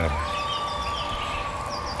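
A whistle-like sound effect: a clear tone glides up quickly and then holds steady, with fast, light ticking high above it over a low hum.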